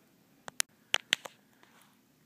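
A handful of short, sharp clicks and taps, about six of them close together, from handling while cables are plugged in and the phone camera is moved.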